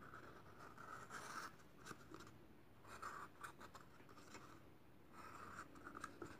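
Felt-tip marker drawing on a cardboard toilet paper tube: faint scratching strokes in a few short spells, with small taps.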